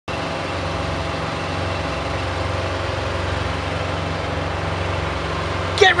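Semi-truck diesel engine idling steadily, a low, even rumble with a faint steady hum above it. A man's voice starts right at the end.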